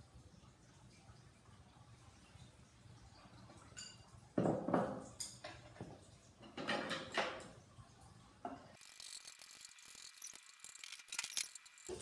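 Beaten egg poured into hot oil in a frying pan, hitting it with a loud sudden sizzle about four seconds in, followed by clattering of the pan and spatula. Near the end comes a steady high sizzle of the egg frying.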